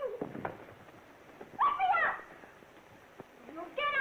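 Two people scuffling and grappling: a couple of knocks near the start, then short, high-pitched wordless cries and squeals about a second and a half in and again near the end, on a worn, noisy early sound-film track.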